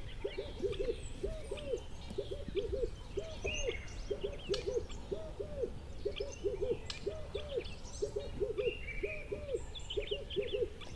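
A steady chorus of low hooting calls in quick runs of two or three, repeating over and over, with scattered higher bird chirps and whistles above it and a steady low rumble underneath.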